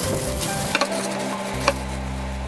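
Halved Korean melons being set down one by one in a clear plastic container, with two sharp clicks of melon against the plastic, about a second in and near the end, the second louder.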